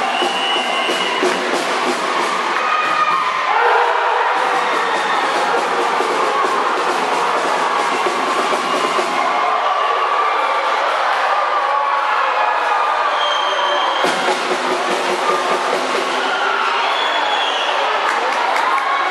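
Crowd of spectators shouting and cheering in a sports hall, a continuous din of many voices at once.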